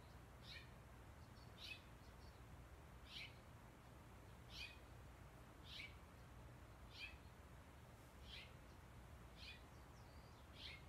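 Faint bird call: a short high note that falls in pitch, repeated about every second and a quarter, eight times, over a low steady hum.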